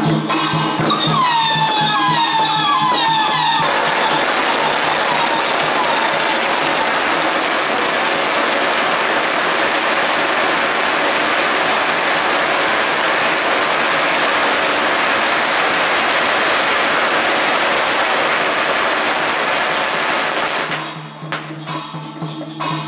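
A long string of firecrackers going off in one continuous, dense crackle for about sixteen seconds, stopping shortly before the end. A few falling whistles come just before the crackle starts.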